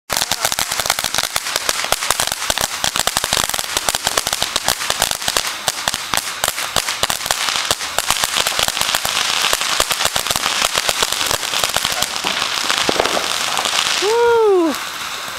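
A ground fountain firework spraying sparks: dense, rapid, irregular crackling over a steady spray hiss, with the hiss growing stronger in the last couple of seconds.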